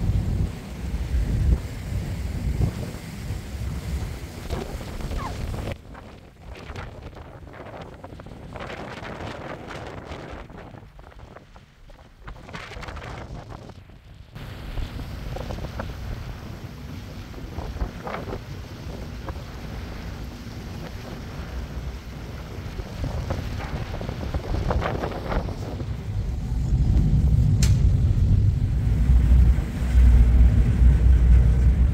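Wind buffeting the microphone on the open deck of a river ferry, a gusty low rumble. It is strongest over the first few seconds and again near the end, easing off in between.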